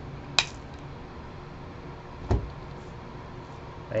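The cutting blade of a UTP crimper snipping through the untwisted wires of a UTP cable, trimming them to length: one sharp click about half a second in. A duller, lower thump follows about two seconds later.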